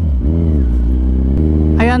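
Kawasaki Z1000 inline-four motorcycle engine running under way: its note rises and falls once, then changes abruptly to a steady new pitch about a second and a half in.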